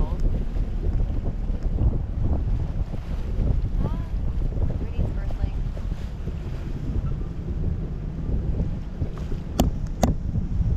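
Wind buffeting the microphone of a camera riding on a parasail in flight: a fluctuating low rumble throughout, with a few faint voices and one sharp click shortly before the end.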